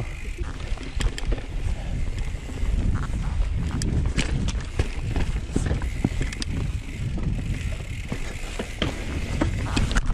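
Mountain bike rolling down rocky singletrack: the bike rattles over rock and dirt with many sharp clicks and knocks on top of a steady low rumble.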